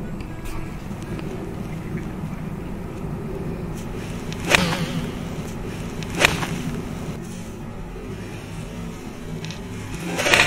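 Two sharp swishes of a golf iron swung through the air and grass, about halfway through and 1.7 s apart; they are practice swings beside the ball. Soft background music plays under them throughout.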